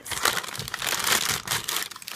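Plastic packaging crinkling loudly and continuously as suction connection tubing is handled and pulled from its sealed bag.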